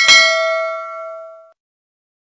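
A single notification-bell ding sound effect, struck once and ringing out with several tones together, fading away after about a second and a half.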